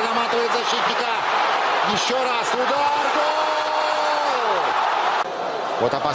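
Russian-language TV football commentator calling the goal over stadium crowd noise, with one long held shout about three seconds in. The sound changes abruptly about five seconds in as the next commentary clip starts.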